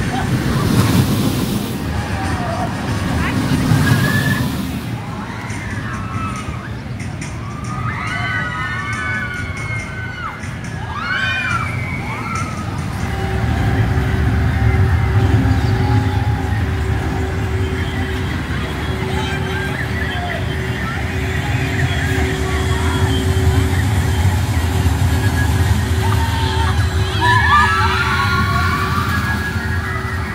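Mack launched steel roller coaster train running along its track, a rushing rumble, with people's voices and shouts over it. From about halfway through, a steady low rumble and a thin steady hum carry on.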